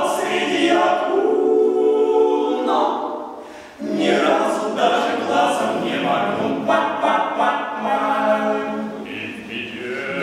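Five-man male a cappella ensemble singing in close harmony. The voices thin out and drop away about three and a half seconds in, then come back in together at full strength.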